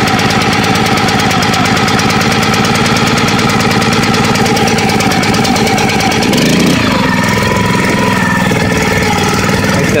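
Predator 212cc single-cylinder four-stroke engine (a Honda GX200 clone) running steadily a touch over idle just after a cold start, with its choke being taken off. Its speed wavers briefly about two-thirds of the way through.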